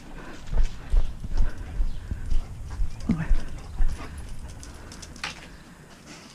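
Footsteps walking on a concrete path, heard as dull thumps about twice a second that stop about four seconds in, with a short voiced sound about three seconds in.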